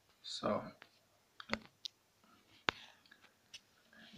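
A short, quiet breathy vocal sound from a person, then about three sharp, isolated clicks spread over the next second or so, with faint murmurs near the end.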